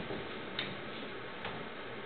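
Low, steady background hiss with two faint light clicks, one about half a second in and one near the middle; no harp is playing.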